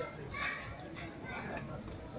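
Indistinct voices of several people talking and calling out over steady outdoor background noise.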